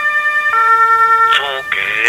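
A two-tone emergency-vehicle siren alternating between a high and a low pitch, switching down about half a second in. Near the end a brief voice fragment and a short hiss cut across it.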